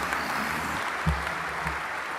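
Audience applauding steadily, with two brief low thumps around the middle.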